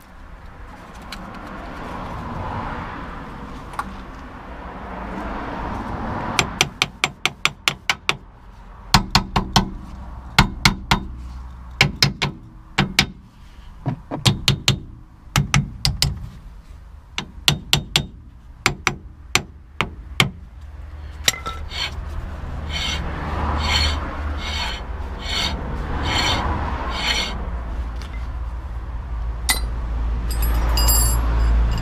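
Socket ratchet clicking in short runs while tightening the rear brake caliper bolts, after a few seconds of metal rubbing and scraping. A low vehicle rumble builds near the end.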